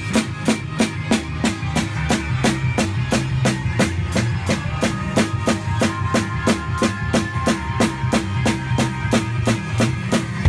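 Acoustic drum kit played along to a recorded song: a steady beat of about four strokes a second over the song's music.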